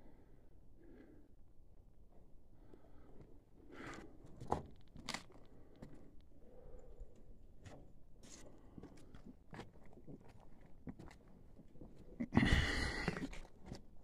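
Footsteps crunching on loose rock and debris, with scattered clicks and scrapes, fairly faint.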